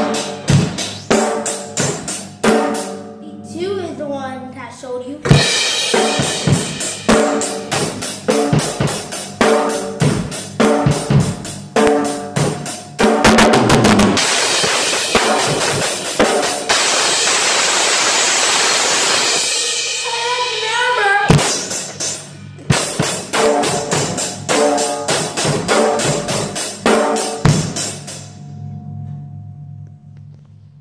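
Child playing a Ludwig Accent beginner drum kit with sticks: a basic beat on snare, bass drum and cymbals. Near the middle the cymbals ring in a long continuous wash. The playing stops shortly before the end.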